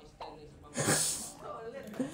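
A man's short, breathy burst of laughter, a sharp exhale about a second in, with faint speech around it.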